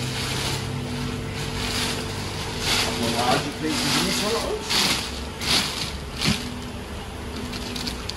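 Clear plastic liner bag crinkling and rustling in several short bursts as it is pulled open inside a polystyrene shipping box and a hand reaches in among the bagged corals, over a steady low background hum.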